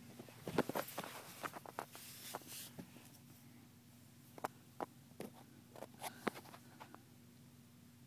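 Scattered light clicks and short rustles, typical of a phone being handled and moved while it records, bunched in the first few seconds and sparser later, over a faint steady low hum.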